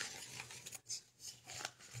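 Faint rustling with a few soft clicks over quiet room tone.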